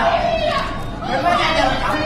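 Speech: a young man talking in Cantonese, with other voices chattering around him in a large hall.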